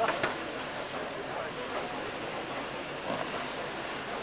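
Steady outdoor background hiss with a few faint, distant voices, briefly at the start and again about three seconds in.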